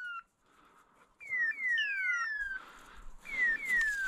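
Hunting dog's beeper collar sounding its point-mode call: pairs of identical falling electronic whistles, repeating about every two seconds, the signal that the dog has stopped and is holding point on a bird.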